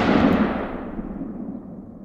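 A boom-like impact sound effect under a title card, fading away steadily over the two seconds as a long, rumbling tail.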